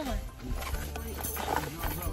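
Talking in a car over background music with a steady low bass.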